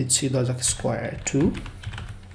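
Typing on a computer keyboard: a quick run of key clicks as a word is entered. A man speaks over the first second and a half.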